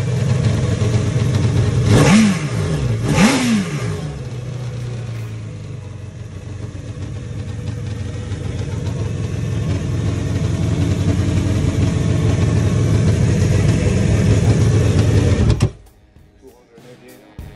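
Yamaha High Output jet boat engine revved twice in quick blips, then running steadily and getting gradually louder, until the sound cuts off suddenly near the end.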